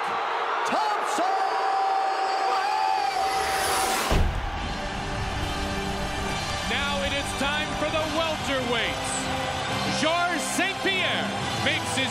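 Arena crowd noise with voices and a long shout, then about four seconds in a sudden loud hit with a low rumble opens dramatic broadcast music that carries a steady rhythm.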